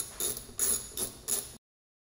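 Socket ratchet clicking in short bursts, about three a second, while loosening the 10 mm engine-cover bolts; the sound cuts off abruptly about one and a half seconds in.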